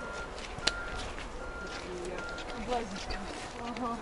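An insect buzzing in short spells that come and go, over faint voices of people in the background, with one sharp click under a second in.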